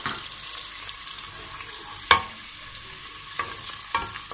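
Sliced onion sizzling as it fries in hot oil and butter in a metal pot, being sautéed and stirred. The spatula knocks against the pot several times, loudest about halfway through.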